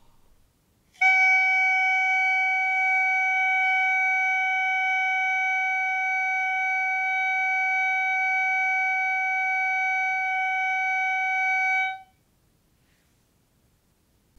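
Clarinet mouthpiece and barrel blown on their own, sounding a single steady tone of concert F-sharp. The note begins about a second in, is held evenly for about eleven seconds, and cuts off cleanly near the end. It is the steady, natural tone that the mouthpiece-and-barrel embouchure exercise aims for.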